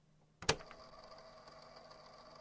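A single sharp knock about half a second in as a boxed laser printer is set down on a desk, cardboard bumping the tabletop. A faint steady hum follows.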